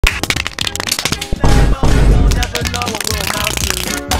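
Background music: a quick run of sharp percussive clicks, then about a second and a half in a loud burst with heavy bass, followed by stepping melodic notes.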